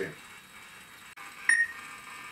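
A single short electronic beep with a clear high tone about one and a half seconds in, from a home-built robot's voice-control system answering a spoken command. A faint click comes just before it, over quiet room tone.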